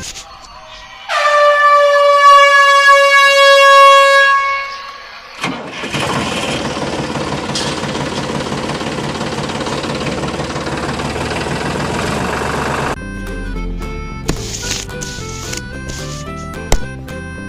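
A train horn sounds one long blast of about four seconds, a single held note. It is followed by about seven seconds of steady rushing noise that cuts off suddenly, with background music at the start and end.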